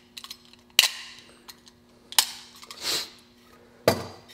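Utility knife trimming the edges of the wooden wedge and handle top in an axe eye: a few sharp clicks and knocks about a second and a half apart, with a short scraping cut through the wood about three seconds in.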